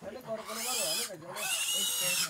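A pig squealing in two long, shrill blasts. It is not being slaughtered; it is thought to be just hungry or lonely.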